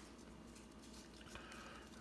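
Near silence: room tone, with faint handling of a stack of paper trading cards.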